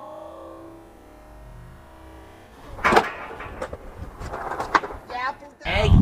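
Faint music fades out, then about three seconds in a skateboard slams onto brick paving with one sharp, loud crack as the rider lands an acid drop off the ledge. Scattered clatter and voices follow.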